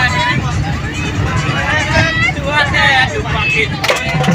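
Several people's voices inside a moving bus, over the steady low rumble of the bus's engine and road noise.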